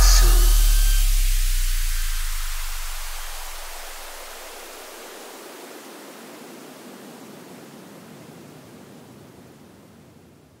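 The outro of an electronic remix track: a wash of synthesized white noise fading out slowly over about ten seconds, with a deep bass note dying away in the first few seconds.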